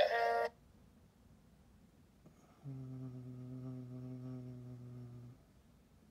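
Music cuts off just after the start; after about two seconds of quiet, a steady low tone sounds, held flat for about two and a half seconds before stopping.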